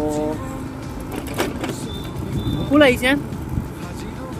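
A man's voice making short, held sounds, once at the start and again about three seconds in, over a steady low rumble.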